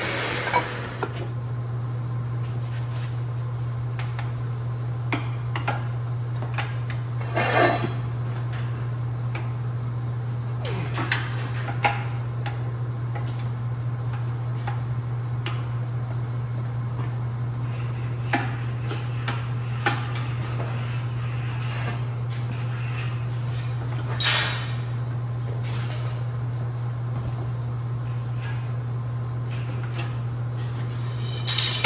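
Scattered metal clinks and knocks as a manual lever tubing bender and a 1¾-inch steel tube are handled and worked, over a steady low hum.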